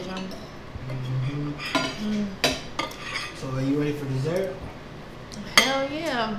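Metal forks clinking and scraping against ceramic dinner plates during a meal, with several sharp clinks. The loudest clink comes near the end.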